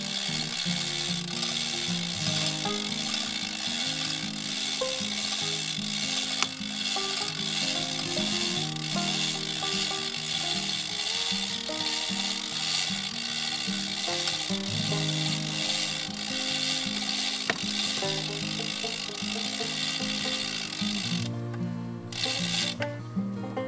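Manual chain hoist being worked by its hand chain, the ratchet pawl clicking steadily and the chain rattling as it lifts a heavy tree stump. The clicking stops abruptly near the end, with background music underneath throughout.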